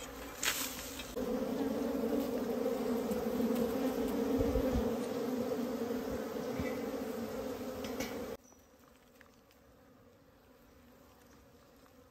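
Honeybees buzzing close around the mouth of their dug-open underground nest: a steady low hum from bees called fierce at this nest. The hum cuts off suddenly about eight seconds in.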